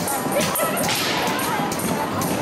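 An ugly stick (a pole strung with bottle caps and jingles) jingling in a steady rhythm of about three strokes a second. Crowd voices and dance music sound under it.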